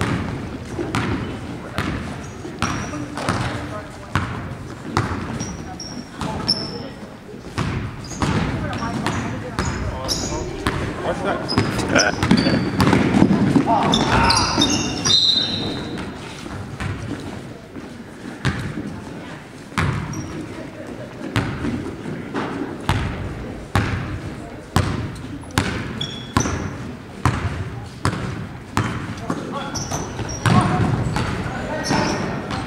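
A basketball bouncing on a hardwood gym floor again and again, with voices and short high squeaks echoing in a large gym. The voices are loudest about halfway through.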